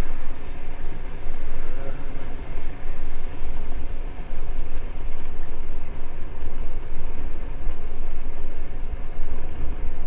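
Bicycle ride over brick pavers heard on an action camera: wind buffeting the microphone and tyre rumble make a loud, uneven low rumble. A single short high chirp sounds about two and a half seconds in.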